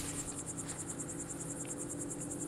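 Crickets chirping in a fast, even high-pitched pulse, about a dozen pulses a second, steady throughout.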